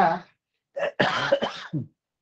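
A man coughing into his fist: a brief cough about three-quarters of a second in, then a longer cough lasting most of a second.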